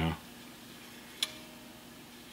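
A single light click about a second in, a steel string of an electric guitar tapped against the frets while the neck relief is checked, with a faint short ring after it. A faint steady hum sits underneath.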